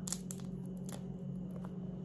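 Crisp focaccia crust crackling faintly as a piece is pulled open by hand, a few small crunches in the first second, over a steady low hum.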